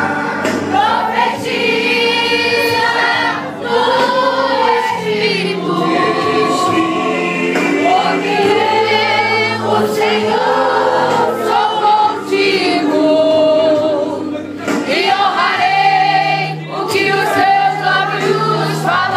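Women's church choir singing a gospel song.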